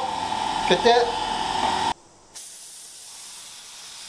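Gravity-feed automotive spray gun with a 1.5 mm nozzle spraying thinned paint: a steady hiss of air and paint that starts about two and a half seconds in. Before it comes a brief voice sound over a steady hum, then a short break.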